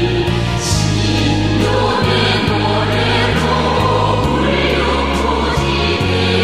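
Music: a female vocal solo over an electronic ensemble accompaniment of synthesizers, with held bass notes and a light, steady beat of cymbal-like ticks.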